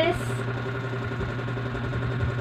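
A steady low mechanical hum, unchanging, with nothing else happening over it.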